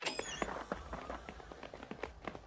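Cartoon footsteps of several people hurrying in across a wooden floor: a quick, irregular run of light taps.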